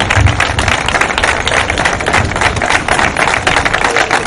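Audience applauding steadily, many hands clapping together.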